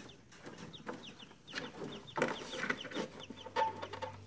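Newly hatched Pharaoh quail chicks peeping: a quick run of short, high peeps, each sliding down in pitch.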